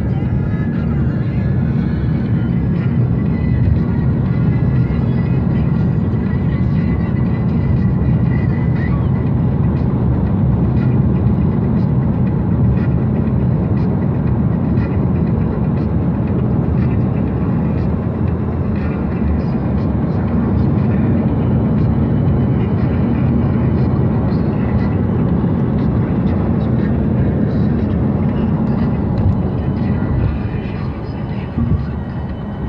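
Steady low road and engine rumble inside the cabin of a moving car, with no breaks or changes.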